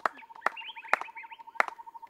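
Applause dying out: a few scattered hand claps, about half a second apart, thinning to single claps.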